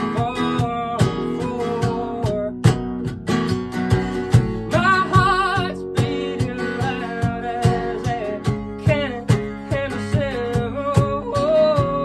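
Live acoustic song: a man singing over a strummed acoustic guitar, with a cajón struck by hand keeping a steady beat. About five seconds in he holds a note with vibrato.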